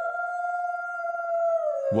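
A drawn-out, howl-like cartoon sound effect that glides up, holds its pitch, then slides down near the end, over a steady held tone. It is the cue that the sneaky thief puppy is coming.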